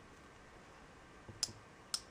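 Two sharp plastic clicks about half a second apart, in the second half, with a softer knock just before the first: the twist dispenser of a Maybelline Age Rewind concealer being turned to push more product into its sponge tip.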